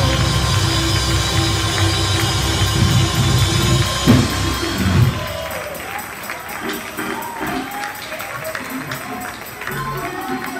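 Live gospel praise music: a church band with drum kit, keyboard and bass backing choir and praise singers. About halfway through, the bass and drums drop out, leaving the singers' voices over light rhythmic percussion.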